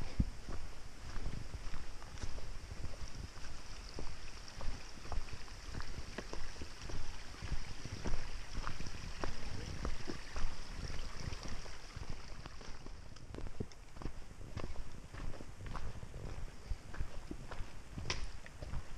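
Footsteps of a hiker walking a dirt and rocky trail, picked up by a body-worn camera: a steady run of thuds and light knocks with each step.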